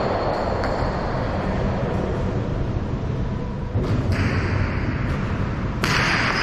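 Jai alai pelota hitting the walls and floor of the fronton: a few sharp, echoing hits in the second half, the loudest near the end, over a steady low rumble of the hall.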